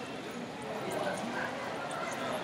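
Indistinct background voices of people talking in a room, steady, with scattered light clicks.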